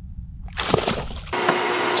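A short splash of water about half a second in, as a small flounder is released beside the boat. Near the end the sound changes to a steady hum.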